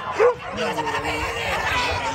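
A dog gives one loud, sharp bark near the start, then yips and whines over the chatter of a crowd.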